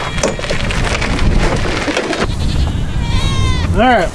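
A loaded wagon rolling and rattling over rough ground for the first two seconds or so. Then goats bleat: a high wavering call and a louder, shorter bleat near the end.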